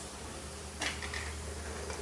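A plastic spatula stirring in a nonstick frying pan of chicken skin and fat boiling in water, with a short clink against the pan a little under a second in over a steady low hum.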